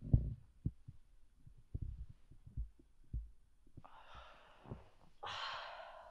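A few soft, low thumps, then two heavy breaths about four and five seconds in, the second a longer, louder exhale like a distressed sigh.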